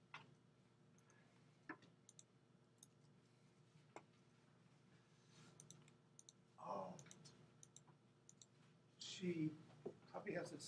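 Computer mouse clicks: a few sharp single clicks, a second or two apart, over quiet room tone. A short mumble of a voice comes in near the end.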